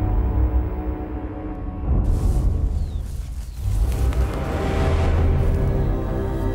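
Background soundtrack music: sustained tones over a deep low drone, changing about two seconds in and swelling in the second half.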